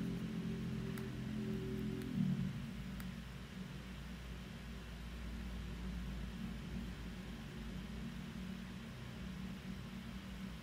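Faint low steady hum. A low held tone stops about two seconds in, and a few soft computer mouse clicks are heard in the first three seconds.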